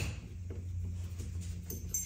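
A single sharp click as a Torx T20 screwdriver meets a screw on the metal housing of a compression driver, then only faint handling sounds over a steady low hum.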